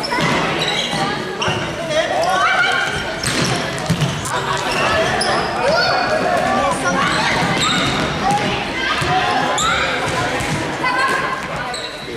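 The echoing sound of an indoor youth football match in a large sports hall: a ball being kicked and bouncing on the wooden floor, with children's and spectators' voices and shouts throughout.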